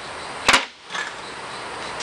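A single sharp knock about half a second in, over a steady background hiss.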